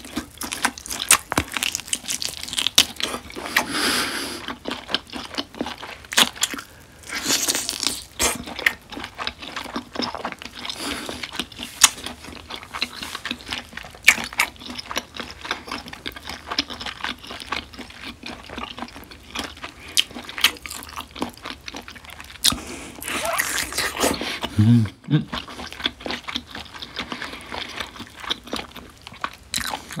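Close-miked biting into and chewing of marinated grilled beef short ribs (LA galbi), with many small wet mouth clicks and smacks.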